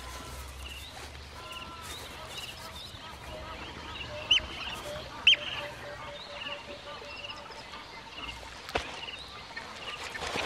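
Wild birds calling: many short, repeated high notes, two sharper, louder calls about a second apart midway, then a quick run of lower notes.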